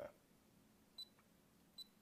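Two short high-pitched key-press beeps from the Protimeter HygroMaster II hygrometer's buzzer as its menu buttons are pressed, one about a second in and another near the end, against near silence.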